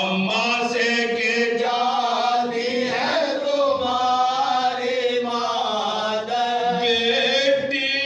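A group of men chanting a soz, a Shia elegy, together in unison without instruments. The long notes are held and waver in pitch.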